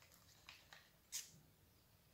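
Near silence, with a few faint clicks and scrapes of a stirring stick against a plastic cup as thick acrylic paint and pouring medium are stirred. The sharpest click comes just over a second in.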